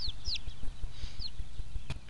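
Young Cochin pullet peeping while held down on its side: a few short, high, falling chirps in the first part, over a steady low rumble. A single sharp knock near the end.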